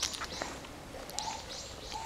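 Birds calling in garden trees: a series of short, high, thin notes repeating every half second or so, with a fainter low note about halfway through.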